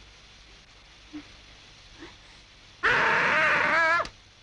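Faint background hush, then near the end a loud, high, wavering wail: a young woman crying out.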